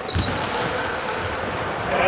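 Basketball thuds and players' footwork on a hardwood court, ringing in a large, echoing sports hall, with a brief high squeak near the start.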